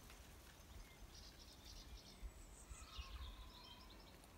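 Faint songbird calling: a quick run of short high chirps about a second in, then a longer twittering phrase with a falling whistle, over a low outdoor rumble.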